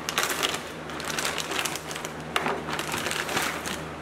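Clear plastic bag crinkling and rustling in bursts as it is torn open and the heavy part inside is pulled out.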